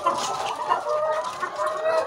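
Flock of caged brown laying hens clucking, many calls overlapping.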